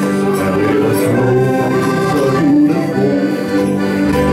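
Small live band playing, an accordion to the fore holding steady chords over moving bass notes.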